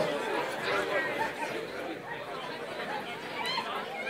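Quiet background chatter of several people's voices, with no distinct event standing out.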